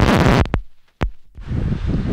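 Wind buffeting the camera microphone, loud rumbling noise that cuts out abruptly about a second in and starts again moments later.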